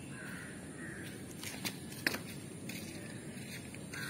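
A bird calling twice near the start, over steady outdoor background noise, with two sharp clicks around the middle.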